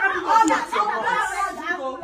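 Only speech: people talking in a room.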